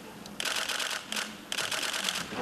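Camera shutters firing in rapid bursts, three runs of quick clicks.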